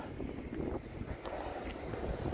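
Wind rumbling on the phone's microphone in a snowstorm, a faint, uneven low rumble.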